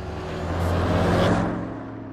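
A vehicle passing-by sound effect: a low engine hum under a rushing noise that swells to a peak about a second in and then fades away.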